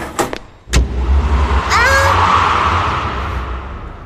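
A car door shuts with a thump, then the car's engine revs and the car drives off, its rumble slowly fading.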